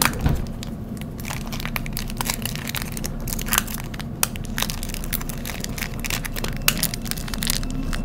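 Clear plastic wrapper crinkling and crackling in irregular clicks as the bagged toys are handled, over the steady low rumble of a moving subway train. Near the end a rising motor whine begins.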